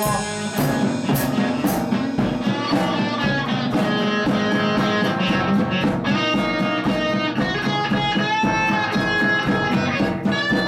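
Amateur rock band playing live, electric guitars and drum kit, in an instrumental break of a rock song. From about three seconds in, a lead guitar line with bent notes rises over the rhythm guitars and steady drums.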